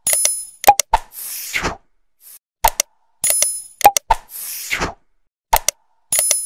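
Like-and-subscribe animation sound effects: quick clicks, a short bright bell ding and a whoosh. The set plays twice, about three seconds apart.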